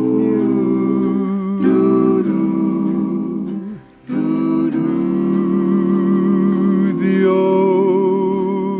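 Country-western band music with guitar, playing long held chords, with a short break about four seconds in.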